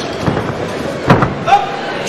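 Boxing arena crowd noise with a few sharp slaps of punches landing, the loudest about a second in, and a short shout near the end.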